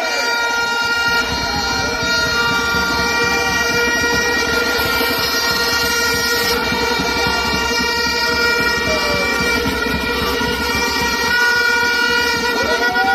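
Many horns sounding together over a crowd, several steady pitches held at once for the whole stretch, with a few short rising and falling notes.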